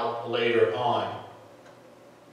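A man's voice preaching a sermon, stopping about a second in for a short pause.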